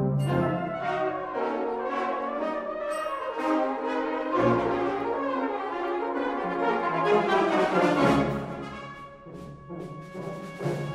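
A Dutch fanfare band of brass and saxophones plays a classical variation at full ensemble, with quick-moving lines and sharp accented attacks. It swells to its loudest about three-quarters of the way through, then thins out near the end.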